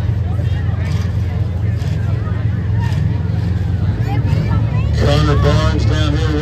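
Engines of demolition derby cars running in a loud, steady low drone, with crowd chatter over it. A voice comes in clearly near the end.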